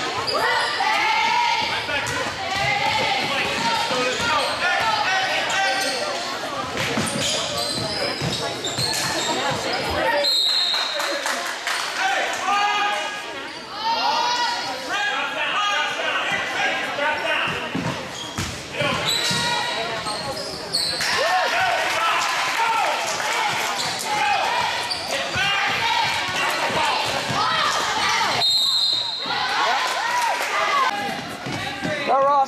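Basketball game in a gymnasium: a ball bouncing on the hardwood floor amid the voices of players and spectators. Two short, high whistle blasts sound, about ten seconds in and again near the end.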